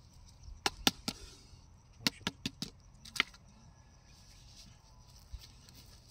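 Sharp plastic clicks and knocks, about eight of them within the first three seconds or so, from a clear plastic jar and its lid being handled while a snake is trapped inside.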